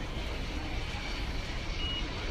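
A boarding-gate pass reader gives one short, high beep near the end, over a steady background hum.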